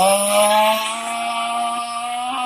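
A man's voice intoning one long drawn-out note, rising into it and then holding it steady: a mock, over-stretched takbir chant.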